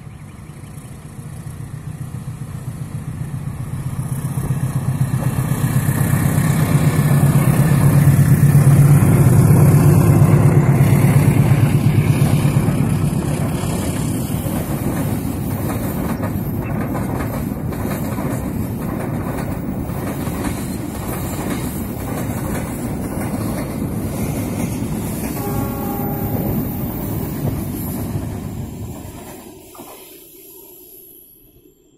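A diesel locomotive hauling a cement freight train through the station without stopping. The engine's low drone builds to its loudest about a third of the way in. Then the wagons run past with a steady rumble and clickety-clack of wheels over rail joints, fading away just before the end.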